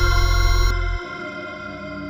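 Layered synthesizers holding sustained, effects-laden chords over a deep bass; the bass and upper tones cut off about a second in, leaving a quieter held chord.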